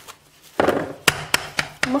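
A silicone spatula scraping and pressing shortbread dough into a plastic-wrap-lined steel bar mould: a burst of scraping about half a second in, then several sharp taps. The dough is being packed firm and level to drive out air bubbles.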